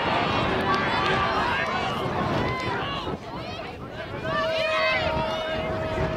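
Several voices shouting and calling out at once, overlapping, easing off briefly about halfway through and then picking up again. A steady single tone comes in about two-thirds of the way through and holds.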